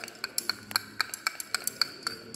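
Glass stirring rod clinking against the inside of a small glass beaker as it stirs starch paste: a quick, irregular run of light ringing taps, about five a second.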